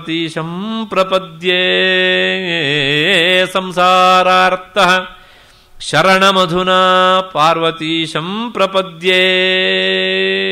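A man chanting a Sanskrit verse in melodic recitation style, holding long notes on a steady pitch with short ornamented turns. It runs in two long phrases, with a brief pause for breath about five seconds in.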